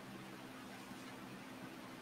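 Quiet room tone: a faint, steady hiss with a low hum underneath.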